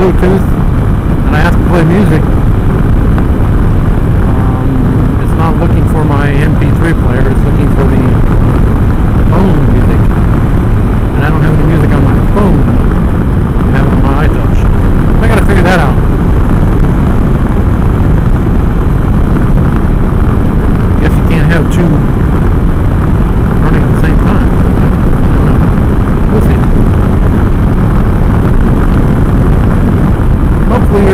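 Steady wind rush and road noise on a helmet-mounted microphone while riding a Can-Am Spyder F3 at highway speed, with the engine running underneath.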